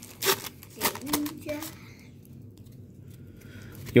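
A paper football-card wax pack being torn open by hand: several quick rips and crinkles of the wrapper in the first two seconds, then softer handling.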